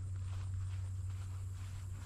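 Faint, irregular soft footsteps in grass over a steady low hum.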